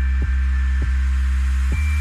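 Christmas pop song playing, an instrumental stretch with no singing: a deep held chord under light, evenly spaced ticks and thin high held notes.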